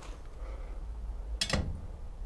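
A single short, sharp click about one and a half seconds in, over a faint steady low hum.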